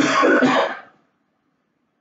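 A person clearing their throat, rough and about a second long, cutting off abruptly.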